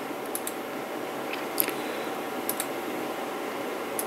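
Steady room noise with a few faint, scattered clicks.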